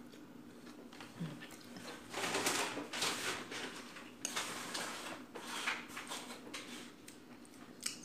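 Metal spoon and fork scraping against a plate as food is cut and scooped, with a few sharp clinks, one about four seconds in and one near the end.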